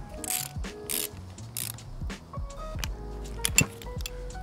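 Irregular clicks and short rattles of a ratchet wrench fitting the nut on the back of the neutral lock plunger bolt in a car's manual shifter assembly.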